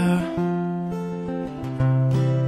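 Fingerpicked acoustic guitar playing an arpeggiated pattern, one note after another with each left to ring on, and a strong low bass note coming in near the end.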